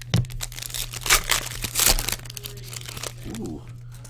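A trading card pack's wrapper being crinkled and torn open by hand, in a run of rustling bursts that are loudest about one and two seconds in, then quieter handling.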